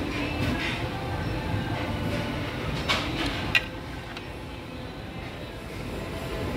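Metal serving tongs clinking against a metal buffet tray, two short sharp clinks a little after the middle, the second louder, over a steady low dining-room rumble.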